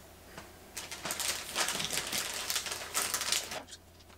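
Crinkling of a plastic bag and small plastic bowling pins clicking against one another as a handful is pulled out of the bag. The rattling starts about a second in and stops shortly before the end.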